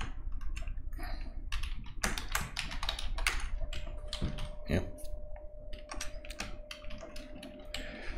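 Typing on a computer keyboard: a quick, irregular run of keystroke clicks as a line of text is typed.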